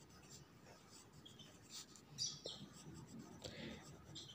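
Faint scratching of a pen writing on ruled notebook paper, in short strokes.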